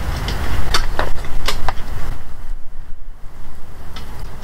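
Low, steady rumble of wind buffeting an outdoor microphone, with several short clicks and rustles in the first two seconds.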